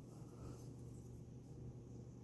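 Near silence: a low steady room hum, with faint soft handling of stainless steel wax carving tools in the hand.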